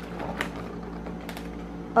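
Latex balloon sculpture handled and turned in the hands, giving two faint short rubbing clicks over a steady low hum.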